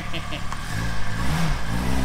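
Small car's engine revving as it pulls away, its note coming up and rising about half a second in, then holding steady revs.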